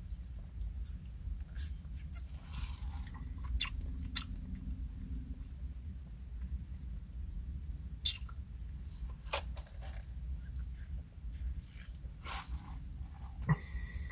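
Quiet mouth sounds of a person tasting an iced latte: sipping through a straw, swallowing, and a few scattered sharp lip smacks and clicks. A low steady hum of the car cabin runs underneath.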